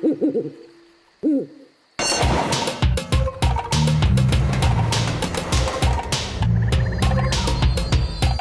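A cartoon owl gives two short hoots that swoop up and down in pitch. About two seconds in, a loud, busy passage of rapid percussive hits over low, stepping tones starts and runs on.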